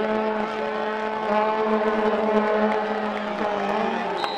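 Brass instruments of a band holding one long, low note together, dipping slightly in pitch about three and a half seconds in.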